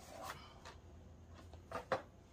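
Small cardboard box being opened and handled by hand, with cardboard rubbing and scraping. Two sharper scrapes come close together near the end, the second the loudest.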